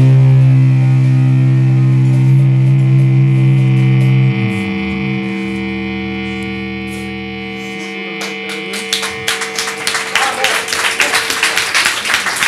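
A rock band's final chord ringing out on distorted electric guitar through an amp, the low notes cutting off about four seconds in and the rest slowly fading. About eight seconds in, audience clapping starts and grows.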